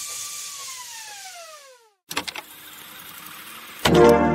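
A falling-pitch sound effect: a held tone with overtones slides steadily downward and fades out over about two seconds. After a brief silence come a few quick clicks and faint hiss, then plucked-string background music starts near the end.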